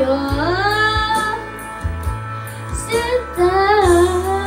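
A child singing a Tagalog love song into a handheld microphone over backing music with a steady low beat. Two long held notes slide upward, the first shortly after the start and the second about three seconds in.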